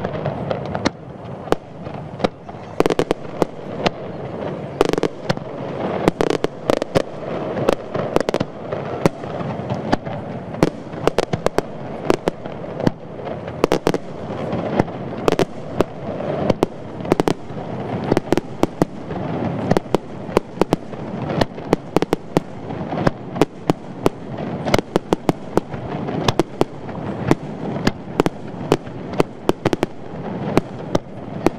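Aerial fireworks display: dozens of sharp bangs from bursting shells in quick, irregular succession over a continuous rumble.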